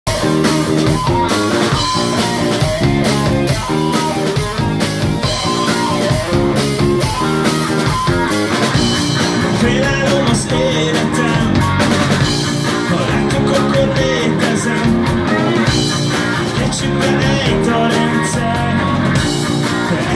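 Rock band playing live: electric guitar, electric bass and drum kit. Choppy, repeated guitar chords for about the first eight seconds, then a fuller, steadier sound.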